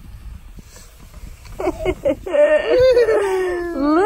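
A toddler's voice making high-pitched, drawn-out sounds without words. The sounds start about one and a half seconds in, with a long held note near the end.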